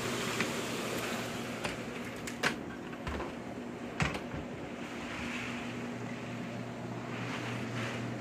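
Heavy hurricane rain falling steadily as a dense hiss, with a steady low hum beneath it. A few sharp clicks and knocks come through, the clearest about two and a half and four seconds in.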